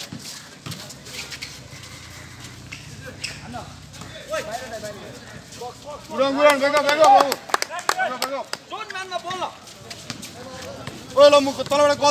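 Shouting voices of basketball players and spectators, loudest about six seconds in and again near the end, with short knocks of the ball bouncing on the concrete court between them.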